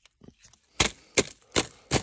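Four sharp snaps about 0.4 s apart, with a few faint clicks before them, as old fibreglass insulation and the wire netting holding it are pulled and broken away from under a floor.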